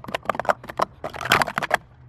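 Plastic Speed Stacks sport-stacking cups clattering in a fast burst of light clicks as they are stacked up and brought back down in a timed run, ending with a last flurry of clicks just before the two-second mark.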